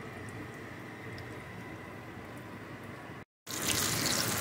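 Breaded pork cutlets shallow-frying in canola oil in a stainless steel pan: a steady, fairly soft sizzle with light crackles. About three seconds in it breaks off for a moment and comes back louder.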